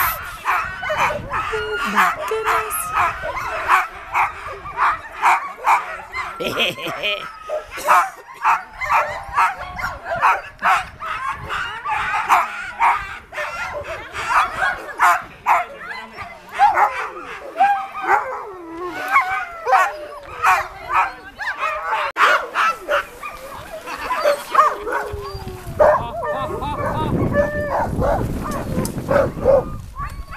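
A pack of harnessed huskies and malamutes barking, yipping and whining over one another without let-up: the eager clamour of sled dogs waiting to run. A low rumble joins in near the end.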